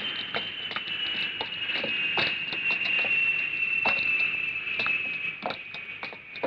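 High-pitched whine of a jet airliner's engines, slowly falling in pitch as they wind down, with irregular light clicks and taps throughout.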